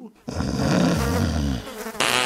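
Cartoon sound effect of flies buzzing around a decrepit, filthy old sheep: a low rasping buzz for about a second and a half.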